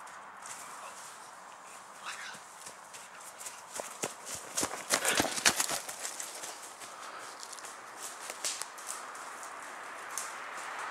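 Running footsteps crunching and rustling through woodland ferns and leaf litter, growing louder and closest about halfway through, then fading.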